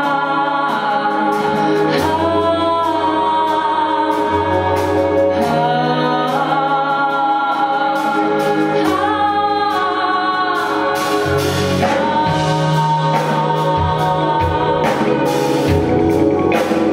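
Live band music with singing: vocals holding long notes over a low bass line that changes note every couple of seconds.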